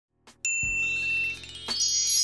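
Intro sound effect: a bright bell-like ding about half a second in, followed by a rising run of tinkling chime notes over a low held tone, and a second shimmering chime hit near the end.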